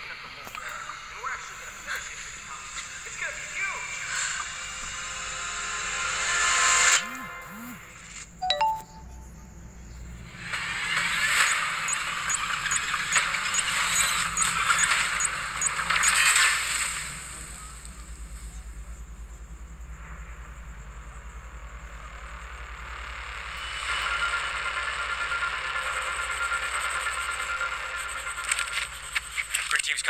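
Produced montage sound: a swelling rise that cuts off about seven seconds in and a short ding, then long hissing scrapes of chalk being drawn on concrete, with music underneath and a steadier hiss near the end.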